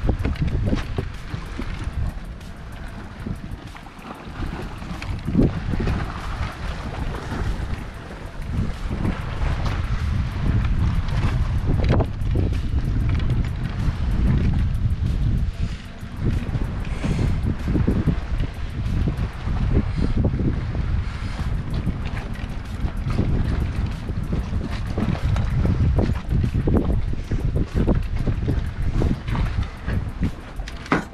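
Wind buffeting the microphone, mixed with the clatter of a loaded wheeled cart rolling over wooden dock planks: irregular knocks as the wheels cross the boards.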